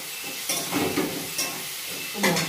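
Metal spatula stirring and scraping food frying in a wok over a steady sizzle, with two sharper scrapes against the pan.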